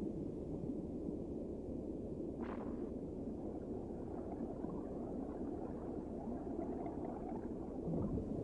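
A steady low, muffled rumble of underwater-style soundtrack ambience, with a brief soft hiss about two and a half seconds in.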